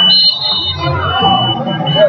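Wrestling scoreboard buzzer sounding a steady, high-pitched tone for under a second as the period clock runs out, ending the period. A lower steady tone runs beneath it, with crowd voices in the gym behind.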